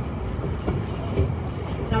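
Steady low rumble of a moving vehicle, with faint voices in the background.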